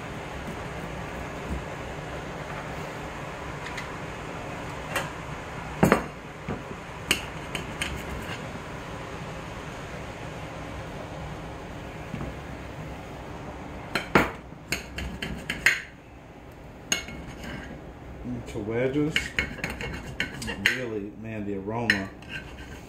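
Kitchen knife cutting limes on a china plate: scattered sharp clicks and knocks of the blade against the plate, bunched together around the middle.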